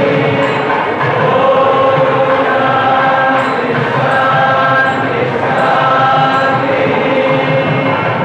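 A group of voices singing a devotional chant together, with long held notes that flow continuously.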